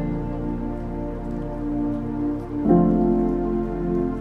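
Soft background music of long, sustained chords, with a change of chord about two-thirds of the way through.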